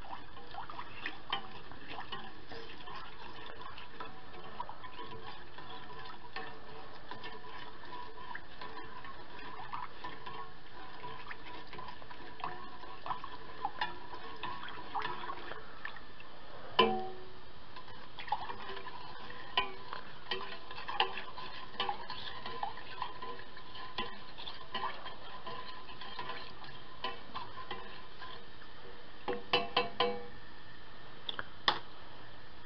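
A plastic spoon stirring sugared rosehip liquid in an aluminium saucepan, with scattered light taps and scrapes against the pan as the sugar is dissolved. One louder knock on the pan, with a brief ring, comes about halfway through.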